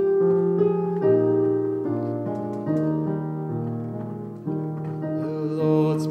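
Piano playing a slow hymn introduction in sustained chords that change about once a second. A man's singing voice comes in near the end.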